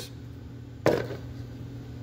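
A single sharp knock a little under a second in, from headlight bulb parts being handled on a workbench, over a steady low hum.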